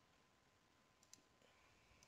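Near silence: faint room tone with two faint computer mouse clicks, close together, a little over a second in.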